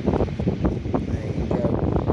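Wind buffeting the microphone: a loud, continuous low rumble with gusty flutter.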